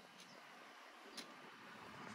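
Near silence: faint background hiss with two faint clicks, one just after the start and one about a second in.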